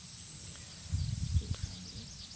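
Quiet outdoor background hiss with a thin high-pitched band, broken about a second in by a short cluster of low bumps and faint clicks.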